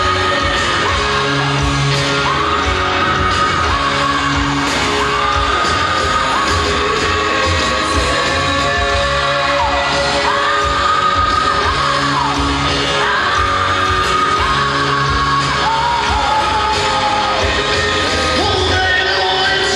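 Rock band playing live in an arena: drums, bass and guitars with singing and some shouts, the high notes held long and bending down at their ends, all with the echo of a large hall.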